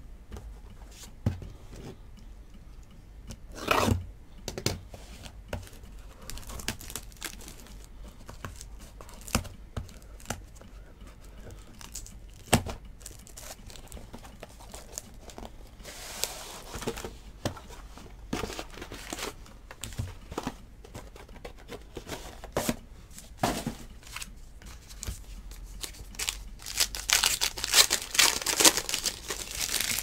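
Trading cards being handled and set down, with scattered light clicks and taps. Near the end comes a longer, louder stretch of packaging crinkling and tearing as the card box is opened.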